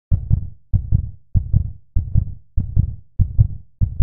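Heartbeat sound effect: a low double thump repeating about every 0.6 seconds.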